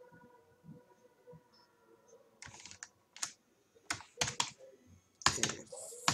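Computer keyboard being typed on in short bursts of a few keystrokes each, starting about two and a half seconds in.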